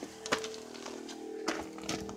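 A few faint clicks from a handheld phone being moved about, over a quiet steady hum.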